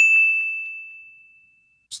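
A single bright bell-like ding, a transition sound effect struck once and ringing down over about a second and a half.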